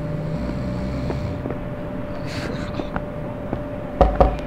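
Steady low rumble with a constant faint hum and a few light clicks or knocks: room ambience, with no music.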